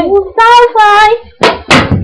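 A young girl's voice sounding a few high, drawn-out sung notes without words, followed by two short, noisy hissing bursts.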